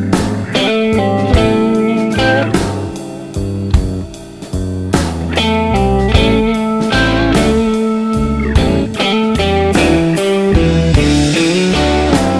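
Slow blues band playing an instrumental break: a lead guitar carries the melody with bent notes over bass and steady drum hits.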